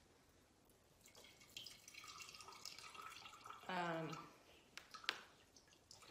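Water squeezed from a sponge trickling and dripping into a glass of water, faint, for a couple of seconds, then a single sharp tick.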